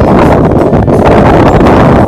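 Strong wind buffeting the microphone: a loud, steady low rumble with gusty flutter.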